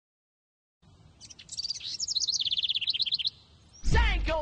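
Birds chirping, with a fast run of evenly repeated high notes in the middle. Just before the end, a hip-hop track's heavy bass and beat come in.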